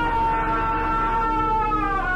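A man's long, high scream, held almost on one pitch and sagging slightly toward the end, over a low steady music drone.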